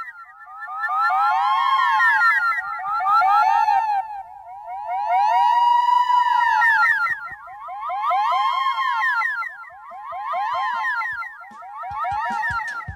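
Siren-like warbling sound effect at the start of a 1970 rock recording: layered tones making several quick downward sweeps a second around one to two kilohertz, swelling and fading in waves every two to three seconds.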